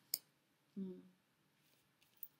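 Mostly quiet room: a single soft click just after the start, then a short low 'mm' from a woman's voice about a second in.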